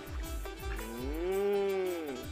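Background music with a steady beat, and one long held note that rises and then falls in pitch over the second half.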